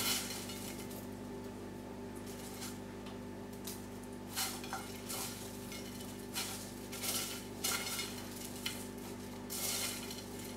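Hands stirring and turning a coarse potting mix of perlite and dark compost in a fluted dish: gritty rustling and scraping in irregular short bursts, with pauses between them.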